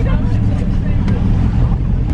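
Pickup truck engine running with a steady low rumble, heard from inside the cab.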